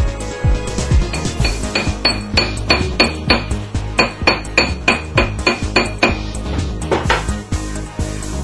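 A steel hammer tapping a ring on a steel ring mandrel, a run of sharp metallic strikes about three a second, each one ringing briefly. Background music plays under it.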